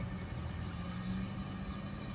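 Cattle truck's engine idling: a steady low hum.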